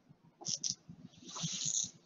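Soft breathing sounds. Two brief hisses come about half a second in, then a longer drawn breath in the second half, just before speech resumes.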